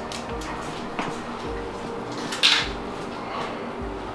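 Background music with steady sustained tones. A faint click comes about a second in, and a short, sharper clatter about two and a half seconds in.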